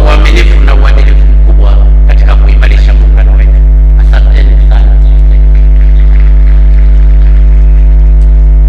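Loud, steady electrical mains hum with a stack of even overtones on the broadcast sound, over a man's speech from a podium microphone; the speech fades out about halfway through while the hum goes on unchanged.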